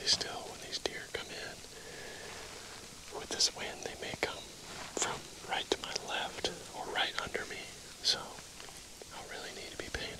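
A man whispering in short phrases, his voice mostly a breathy hiss.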